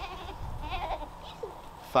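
A goat bleating once, a short wavering call about halfway through.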